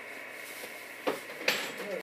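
Stryker SR-955HP CB radio receiving a weak signal: steady static hiss, two sharp clicks about a second and a second and a half in, and a faint voice coming through near the end.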